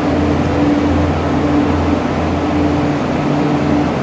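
Cable car station machinery running as a gondola cabin moves through the boarding loop: a loud, steady low hum with a higher steady tone above it.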